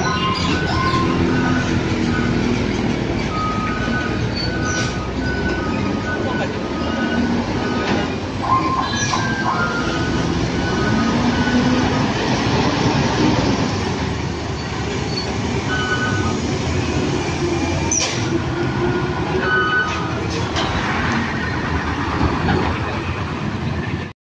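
Diesel engines of buses and trucks running in heavy traffic on a steep hairpin bend, one engine note rising and falling about halfway through. Short horn notes in two or three pitches sound again and again throughout.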